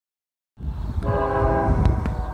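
A CN locomotive's air horn sounds one chord for about a second as the train approaches, over a low steady rumble.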